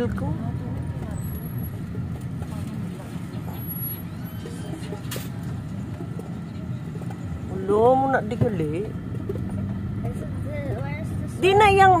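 Steady low rumble of engine and road noise inside a moving car's cabin. A short spoken remark comes about eight seconds in, and talk starts again near the end.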